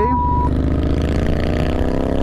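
Harley-Davidson V-twin touring motorcycle engine running at road speed, its pitch falling slowly as the rider eases off, over steady wind rumble. A short steady beep sounds at the start.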